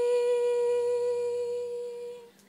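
A young woman's voice holding one long, steady sung note with no accompaniment, easing off slightly near the end.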